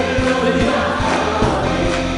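A Korean worship song sung by a man's voice at a microphone, over a band with drums and with other voices singing along.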